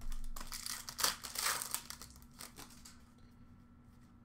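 Foil trading-card pack wrapper crinkling and tearing as it is handled and ripped open, loudest about a second in and fading out before the end.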